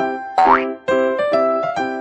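Bouncy keyboard background music playing notes on a steady beat, with a quick rising cartoon 'boing' sound effect about half a second in.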